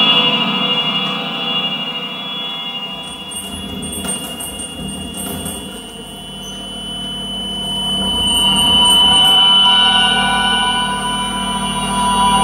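Live electroacoustic music: double bass processed in real time through a Kyma system, forming layered sustained drones and ringing tones. It thins out toward the middle, then swells back up, loudest about three-quarters of the way through.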